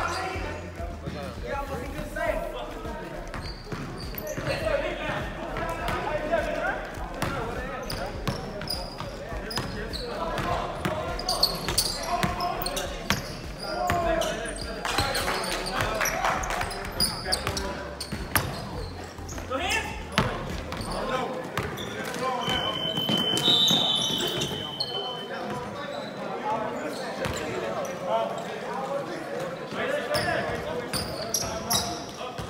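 Basketball game on a hardwood gym floor: the ball bouncing and players' voices calling out across the court, echoing in a large hall. A steady high tone sounds for about two seconds a little past two-thirds of the way through.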